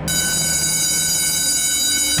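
Horror soundtrack sound design: a sudden, steady, high-pitched metallic ringing made of many tones at once, like a shrill whine or screech, over a low rumble.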